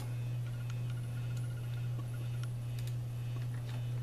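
Steady low hum with a few faint, sharp clicks of a computer mouse as a desktop window is closed.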